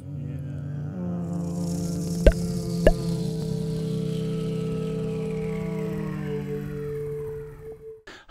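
Channel intro music: a sustained droning chord of steady tones under a falling whoosh, with two sharp accent hits about half a second apart a little over two seconds in, fading out near the end.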